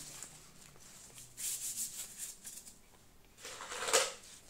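Gloved hands rustling and scratching in potting soil and primula leaves around a plastic flower pot: a run of short rustles in the middle and a louder brushing rustle near the end.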